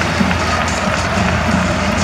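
Baseball stadium crowd noise with music from the fans' cheering section, continuous throughout.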